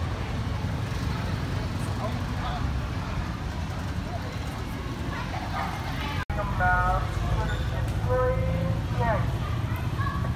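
City street ambience: a steady low rumble of engines and traffic, with people talking in the second half. The sound drops out for an instant just after the middle.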